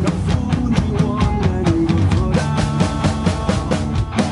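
Acoustic drum kit played along to a recorded pop-rock backing track. The kick, snare and cymbals keep a steady beat over the track's bass and other instruments.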